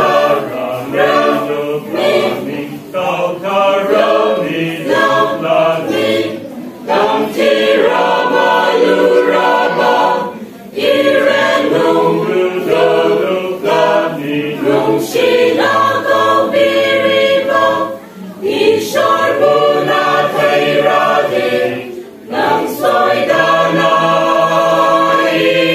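A church choir singing a Manipuri Christian hymn in unison phrases without instruments, with short breath pauses between the phrases.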